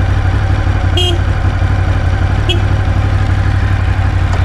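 Ducati Monster 1200S's L-twin engine idling steadily while the bike stands still. Two brief faint higher sounds sit over it, about a second and two and a half seconds in.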